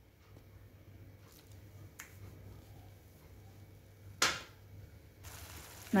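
A pan of goat liver gravy cooking quietly on the stove over a faint steady low hum, with a light click about two seconds in and a short, sharper click about four seconds in. A faint hiss of sizzling comes up near the end.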